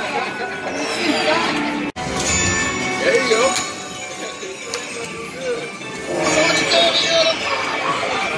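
Dragon Link Golden Century slot machine playing its electronic chimes and jingle music over casino crowd chatter, with an abrupt cut about two seconds in, after which the machine's free-games bonus music plays.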